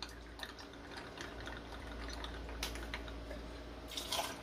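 Faint trickle of rum poured from a bottle's pour spout into a metal cocktail shaker full of ice, with a few light ticks.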